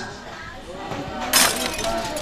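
Glass-shattering sound effect: a sudden crash with a ringing tail about one and a half seconds in, laid over faint voices.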